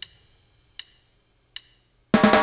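Three faint, short ticks, evenly spaced about 0.8 s apart (roughly 77 beats a minute), like a digital metronome click keeping time during a pause in a reggae drum beat.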